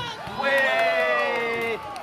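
A volleyball hit hard at the net right at the start. Then a long, drawn-out vocal shout of overlapping voices, held for over a second, reacting to the play.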